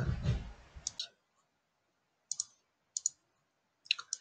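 Computer mouse clicking: a few short, sharp clicks, mostly in pairs a split second apart, about two and three seconds in.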